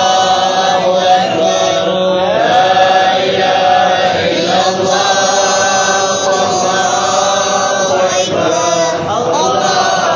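Group of voices chanting an Islamic devotional chant in unison, with long held notes that glide slowly up and down.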